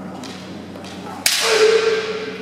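A sharp crack of a bamboo shinai strike about a second in, followed at once by a kendo fighter's long, held shout (kiai).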